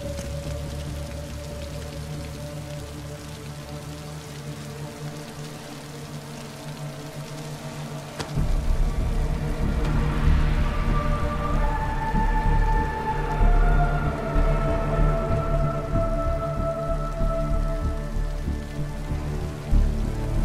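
Heavy rain pouring, under a film score of long held notes. About eight seconds in there is a sudden hit, after which the rain and a deep low rumble are much louder.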